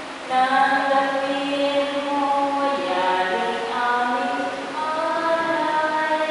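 Group of voices singing a slow church hymn, holding long notes that move from pitch to pitch.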